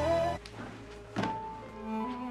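Dramatic background score: held notes break off a moment in, a single thud lands about a second in, and slow bowed strings come in after it.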